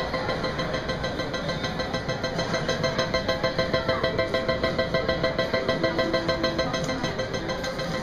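IGT Triple Stars reel slot machine sounding its jackpot alarm, a fast, even, ringing pulse of the same few tones repeated over and over: the signal of a hand-pay jackpot lockup awaiting an attendant.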